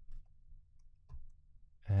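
A few faint, sparse clicks from computer input over a low hum.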